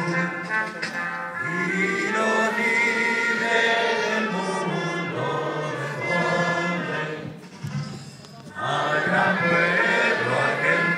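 Many voices singing a song together, sustained and choir-like. It thins out for about a second and a half near the end, then picks up again.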